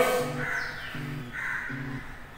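Crows cawing several times, the loudest caw right at the start, over faint background music.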